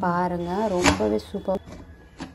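A person's voice speaking for about the first half, with one sharp click partway through, then quieter room tone.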